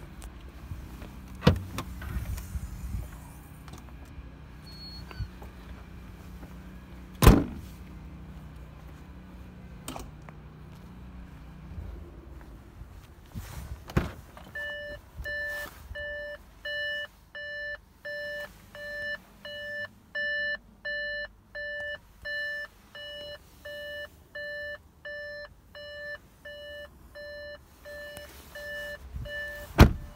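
A few knocks and one loud thump in the first half, then the Audi TT's interior warning chime beeping repeatedly and evenly, about two beeps a second, through the second half.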